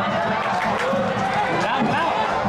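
Football crowd in the stands shouting and chanting, many voices overlapping at a steady level as play runs on the pitch.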